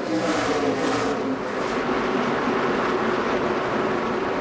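NASCAR Sprint Cup stock cars' pushrod V8 engines at full race speed: a loud rush as the cars pass close through the first two seconds, then a steady engine drone.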